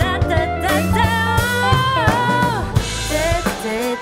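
Live band music: a woman singing over drum kit, bass guitar, electric guitar and keyboards. About a second in she holds one long note with vibrato, which falls away in pitch near the middle.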